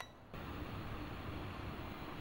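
Electric tower space heater's fan running steadily on its highest setting, starting about a third of a second in.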